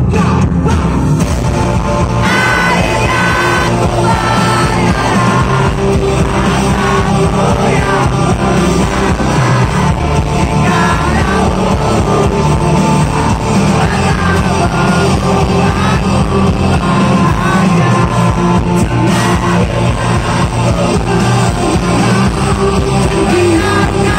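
Live rock band playing: electric guitars, bass and drums under a male lead singer. The singing comes in about two seconds in and carries on over the band.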